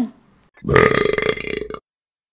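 A man's loud, drawn-out burp lasting about a second, starting about half a second in and cutting off abruptly.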